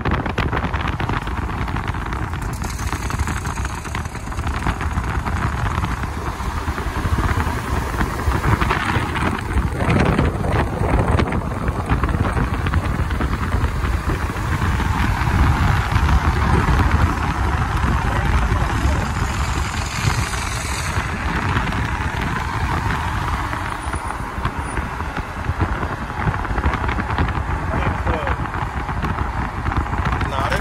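Steady rush of wind and tyre noise from a car driving at road speed, heard through the open side window, with other traffic running alongside.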